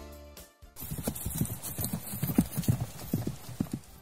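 A cartoon sound effect of quick, hollow clip-clop knocks like hooves, several a second, starting about a second in as the background music fades out.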